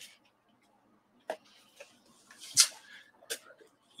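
Paperback book being handled and put down: a few short, soft rustles and taps of pages and cover, the loudest about two and a half seconds in.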